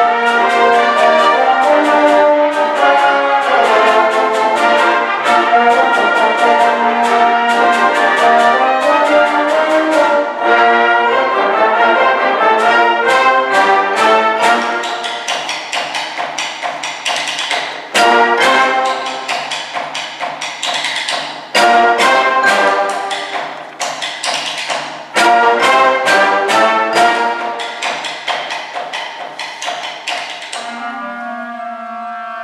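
Concert wind band playing a fast overture live, with brass, woodwinds and percussion. A loud full-band passage gives way about halfway through to quieter playing, broken by three sudden loud full-band entries a few seconds apart.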